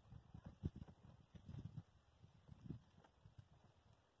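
Near silence, with faint irregular low knocks and rustles from clothes being taken down off a clothesline.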